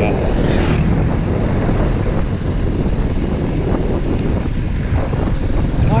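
Suzuki GD 110S motorcycle's single-cylinder engine running steadily at riding speed, under heavy wind noise on the microphone.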